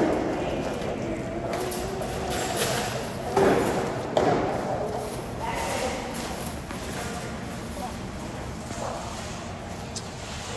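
Metal shopping cart rolling over a ribbed rubber entrance mat amid footsteps and indistinct voices, with a couple of short thuds a few seconds in.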